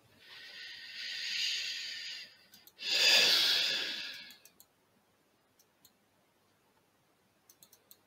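A person breathing in with a long hiss, then breathing out in a louder sigh lasting about a second and a half, close to the microphone. A few faint mouse clicks follow near the end.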